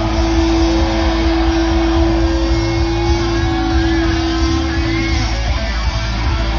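Live rock band playing loudly, heard from within the crowd: an electric guitar holds one long sustained note over the band, fading near the end.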